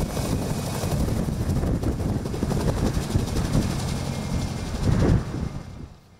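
A crop-spraying helicopter fitted with spray booms flying low nearby, its main rotor beating steadily over the engine noise. The sound fades out near the end.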